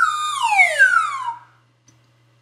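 Comic falling-whistle sound effect, a whistle-like tone sliding steadily down in pitch for about a second and a half before fading out, used as a 'whoops' cue for a mistake.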